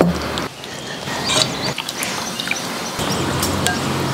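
Tofu cubes being slid off a cleaver and stirred into beaten egg with chopsticks: a run of light clicks and wet taps against the bowl. Soft background music plays underneath.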